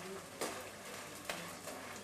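Pieces of edible gum (dink) frying and puffing up in hot ghee, a faint steady sizzle, while a perforated skimmer stirs them and knocks against the pan twice.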